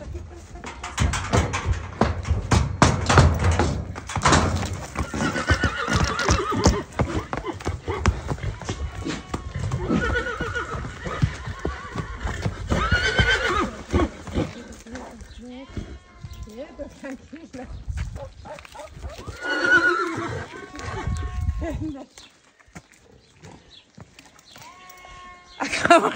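A 27-year-old horse whinnying excitedly several times, the calls coming in separate bouts. In the first few seconds his hooves clatter on the metal trailer ramp and the ground. A woman's voice can also be heard.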